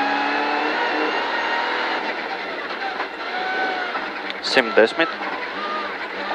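In-cabin sound of a Mitsubishi Lancer Evolution X rally car's turbocharged engine running hard on a snow stage, its pitch dipping and rising as the car slows through a bend. The co-driver's voice cuts in briefly near the end.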